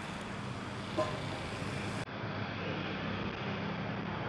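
Steady street ambience: traffic noise with a low hum, and a brief click about a second in.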